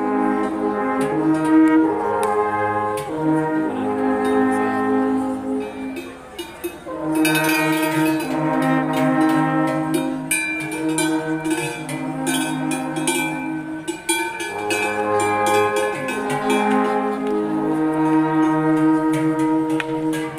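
An alphorn ensemble playing a slow piece in several parts, with long held notes sounding together as chords and changing every second or two.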